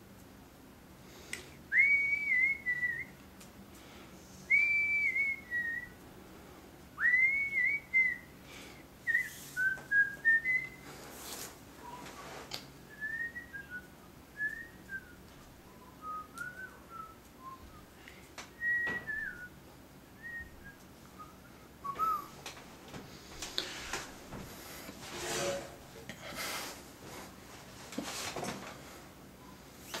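A person whistling a tune in short phrases, several of them starting with an upward slide into the note. The phrases grow quieter and more broken after about ten seconds, and handling and rustling noises come in near the end.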